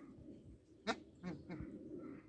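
Bar-headed geese giving a few short, nasal honks; the loudest comes about a second in, with two more just after.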